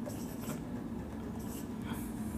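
Marker pen writing on a whiteboard: a few short strokes.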